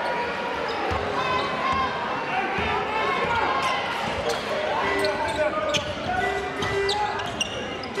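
Basketball game sound in an indoor arena: a crowd murmuring and chattering, with a ball bouncing on the court and short squeaks scattered throughout.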